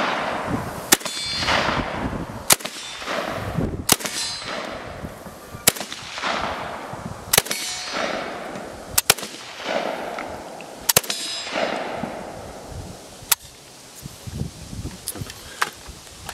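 Saiga-410 semi-automatic .410 shotgun firing No. 7 birdshot, about eight single shots, one every one and a half to two seconds. Each shot is followed by a ringing clang of shot striking steel targets.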